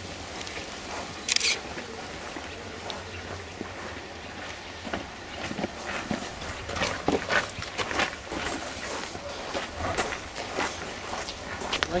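Footsteps of several people walking over stone paving and gritty ground, as irregular scuffs and taps, with faint voices behind them. A brief high hiss stands out about a second and a half in.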